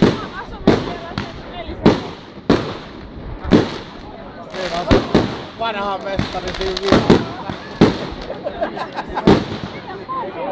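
Aerial fireworks shells bursting overhead in a string of sharp bangs, about one a second, a dozen or so in all.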